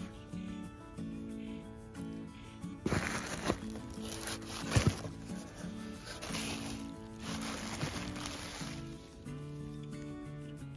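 Background music throughout. From about three seconds in, plastic air-pillow packing crinkles and rustles as it is handled in a cardboard box, with sharp crackles; the loudest is near five seconds. The rustling dies away about a second before the end.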